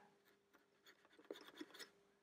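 Faint scratching of an old paintbrush scrubbing weathering wash on a model wagon's side panel, as a few short strokes in the second half.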